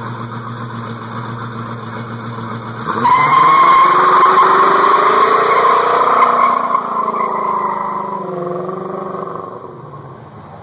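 1979 Pontiac Trans Am's V8 idling with a steady rumble close to its exhaust. About three seconds in it revs hard and the rear tyres squeal in a burnout, with the engine note climbing. The squeal and engine fade over the last couple of seconds as the car pulls away.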